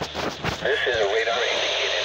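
A weather radio's small speaker plays a voice reading a flash flood warning, followed by a steady radio hiss in the pause between sentences. A few sharp clicks come near the start.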